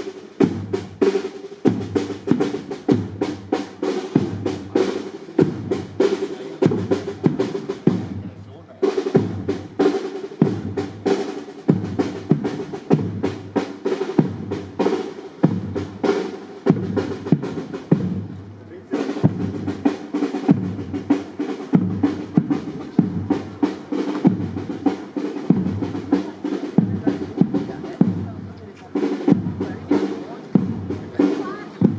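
Marching-band drums, snare and bass drum, beating a steady march cadence, with two short breaks between phrases.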